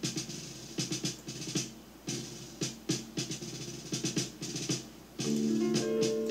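Recorded 1978 jazz-rock track playing: a martial drum pattern of sharp strokes, joined about five seconds in by full sustained piano chords.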